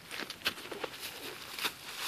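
Footsteps and scuffling on dry leaf litter and grass, a handful of short, irregular crunches.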